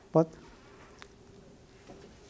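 A man says one short word, then a faint steady buzzing hum of room equipment carries on, with a light click about a second in.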